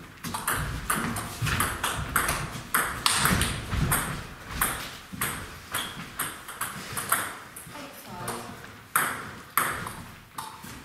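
Table tennis rally: a quick run of sharp pocks as the ball is struck by the bats and bounces on the table, then only a few scattered bounces after the point ends about halfway through.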